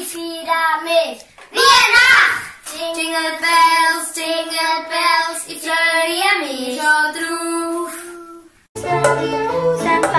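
Young children singing a song together, without instruments, in held notes. Near the end it cuts to another song with an instrumental backing under the voices.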